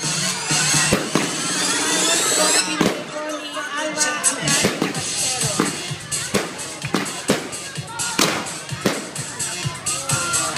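Fireworks display: aerial shells bursting with repeated sharp bangs and crackle, and rising whistles in the first three seconds, over music and voices.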